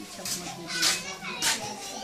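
Indistinct voices in the room, a child's among them, in short bursts.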